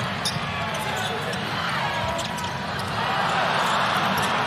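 Steady basketball arena crowd noise, with a ball dribbled on the hardwood court heard as a few faint, spaced knocks.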